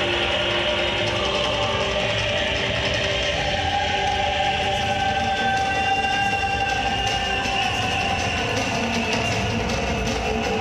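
Worship band music played live, with long held notes.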